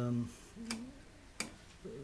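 Rotary oven mode selector switch on a Hansa cooker clicking into its detents as the knob is turned: two sharp clicks, a bit under a second apart.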